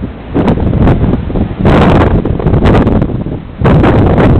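Strong gusting wind of a dust storm buffeting the microphone, loud and rumbling, easing briefly just after the start and again shortly before the end.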